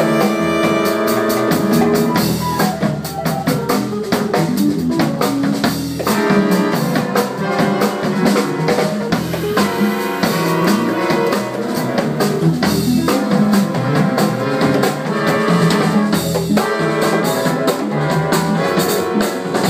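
Jazz big band playing at full ensemble: drum kit, upright bass, trumpets, trombones and saxophones, with busy drumming.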